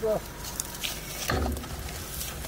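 Short calls from men straining together as they heave, with a low rumble coming in about halfway.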